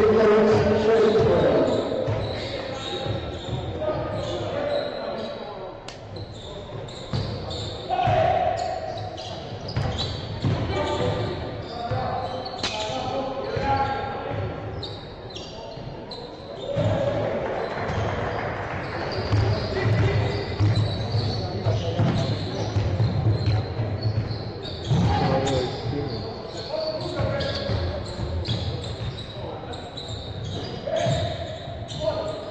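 A basketball being dribbled on a hardwood court, with repeated low bounces, in an echoing sports hall, with players' and bench voices calling out over it.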